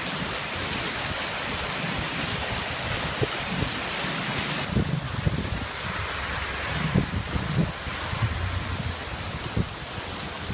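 Heavy rain mixed with hail pouring down: a dense, steady downpour with a scattering of sharp knocks from hailstones striking hard surfaces.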